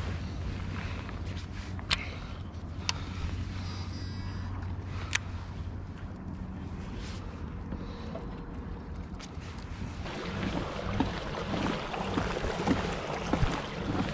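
A fishing kayak's hull moving through the water, with rushing and splashing that rises about ten seconds in. Before that there is a low steady hum and a few sharp clicks.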